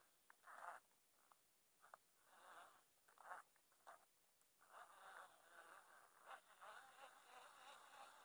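Faint fishing reel being cranked in short, irregular spells as a spinner bait is retrieved across the pond; otherwise near silence.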